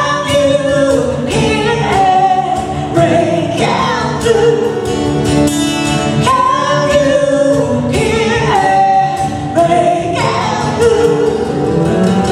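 A woman singing live into a microphone, holding long notes that move up and down in a melody, over amplified instrumental backing.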